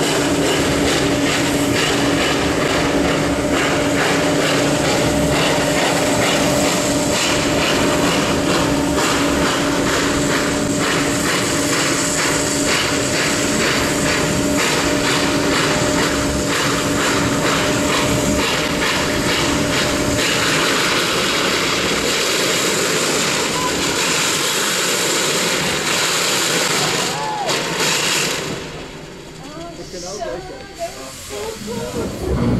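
Steam train running: a loud, steady rush of steam hiss and running noise heard from a passenger coach, with a steady low hum underneath for the first twenty seconds or so. The sound drops away sharply a couple of seconds before the end.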